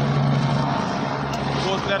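Steady drone of an aircraft engine overhead, with voices of a crowd around.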